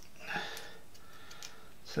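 Quiet room tone with one faint breath a little under half a second in.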